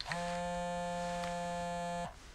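A mobile phone buzzing for an incoming call: one steady electronic buzz, about two seconds long, that starts and stops abruptly.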